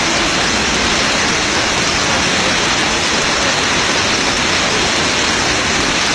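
Steady, loud rushing noise that runs unbroken and does not change.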